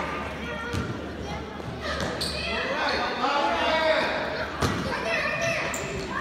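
Basketball bouncing on a hardwood gym floor, with sharp echoing thuds about a second in and again near five seconds, under the voices of players and spectators in the hall.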